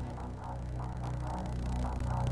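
Background music: a sustained low bass tone with a soft figure repeating above it, about three notes a second.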